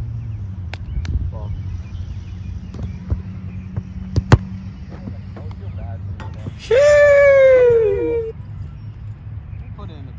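Football kicks on a pitch: a run of sharp knocks, the loudest about four seconds in. A person's long falling cry follows near seven seconds, over a steady low rumble.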